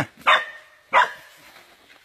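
A dog barking twice, short and sharp, about a quarter second in and again about a second in.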